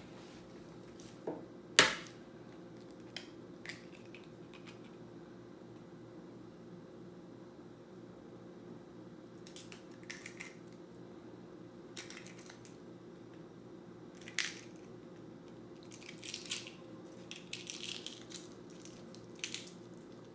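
A raw chicken egg cracked with one sharp knock about two seconds in, then, over a steady faint hum, scattered short crackles of eggshell being snapped into pieces by hand from about halfway on.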